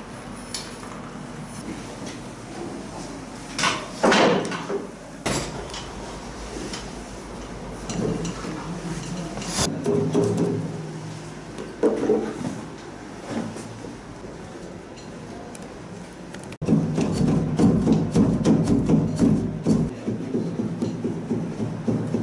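Kilim weavers beating the weft down on upright looms: scattered sharp knocks, then a fast, dense run of knocks in the last five seconds.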